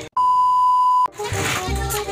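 A single steady beep tone of about one second, cutting in and out abruptly after a split-second of silence, like an edited-in censor bleep; background music with a beat follows.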